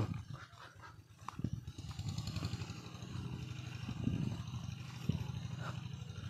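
A small engine running steadily, a low hum with a fast, even pulse, coming in about a second and a half in and holding to the end.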